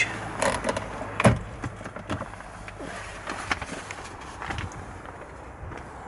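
Scattered light clicks and knocks of handling and movement around a car's interior trim, with one sharper knock about a second in, over a low steady background hum.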